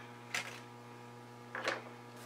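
A metal watercolour palette tin being moved across the desk: two short handling noises about a second and a half apart, over a steady low electrical hum.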